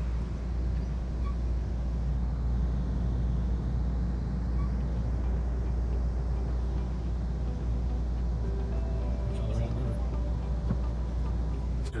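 Steady low rumble of a moving Amtrak passenger train, heard from inside the coach. Faint passenger voices come in near the end.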